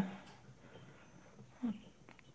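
Faint, sparse peeping of day-old Pharaoh quail chicks in a brooder, with one short low voice sound near the end.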